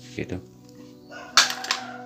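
A single sharp click about one and a half seconds in, followed by a few fainter ticks, from handling a small steel screwdriver bit and the plastic case of a precision screwdriver set. Soft background music runs underneath.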